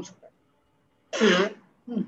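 A person clearing their throat once, a short harsh burst about a second in, between brief fragments of speech.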